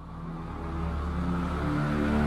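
Low, droning transition sound effect that swells steadily louder.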